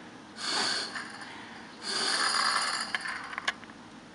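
Two breaths blown hard into a puzzle box's hollow handle tube, a short one and then a longer one, spinning the light aluminium fan inside that turns a threaded rod to drive the latch plunger locked. A few small clicks follow near the end.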